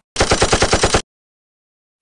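Machine-gun sound effect: a rapid burst of about a dozen evenly spaced shots lasting about a second, cutting off suddenly.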